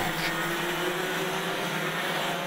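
IAME X30 125 cc two-stroke kart engines running at speed on the track: a steady, even drone.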